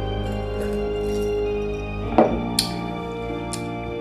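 Background music with held notes plays throughout. A little over two seconds in come two sharp clinks close together, with a fainter one about a second later: a glass with ice in it clinking as it is lowered and set down on the table.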